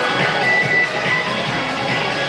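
Dance music with a steady beat, played back through loudspeakers.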